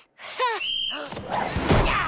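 Cartoon sound effects of a volleyball being spiked: a short grunt, a brief high tone, then a swelling rush of noise that ends in a heavy thud near the end.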